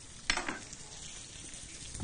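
Hot electric contact grill sizzling faintly as its preheated ribbed plate gives off smoke, with one short clack about a third of a second in.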